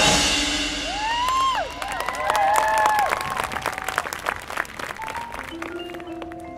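A marching band's full-ensemble chord cuts off, and audience applause with whoops and cheers follows and gradually fades. Near the end, the front ensemble's mallet percussion starts soft, sustained notes.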